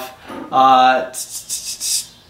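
A man's short, wordless vocal sound, followed near the end by a soft hiss in a few quick pulses.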